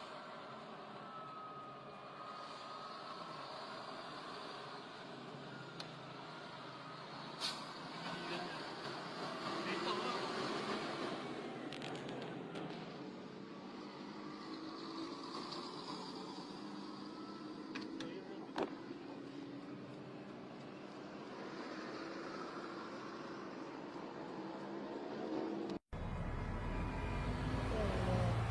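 Road and engine noise inside a car moving slowly in traffic, with faint voices in the cabin and a few sharp ticks. The sound drops out for an instant about two seconds before the end and comes back louder, with more low vehicle rumble.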